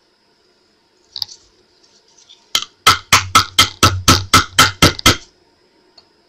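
A small jar held upside down and tapped about ten times in quick succession, roughly four taps a second, to knock the last loose crushed glass out of it, with one click about a second before.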